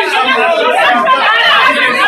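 Several people talking loudly over one another in a heated argument.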